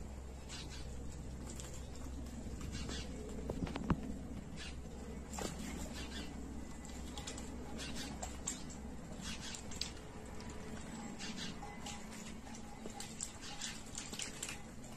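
A small bird bathing in a shallow water tub, splashing in short bouts of quick, light flicks of water, with one sharper tick about four seconds in.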